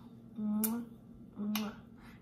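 A woman blowing two kisses about a second apart, each a short hummed 'mwah' ending in a sharp lip smack.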